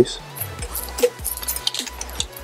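Faint, scattered metallic clicks and clinks as a small coil spring is dropped into the hinge bore of an AR-15 folding stock adapter and the parts are handled.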